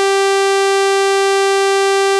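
VirSyn AddStation additive synthesizer app sounding one sustained note while a key is held, steady in pitch and level, with a bright, buzzy tone full of overtones.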